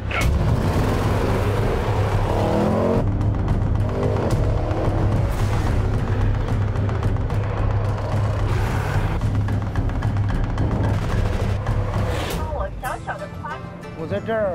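Range Rover Sport Plug-In Hybrid accelerating hard, its engine note rising in sweeps, under dramatic music with a steady deep drone. A man starts talking near the end.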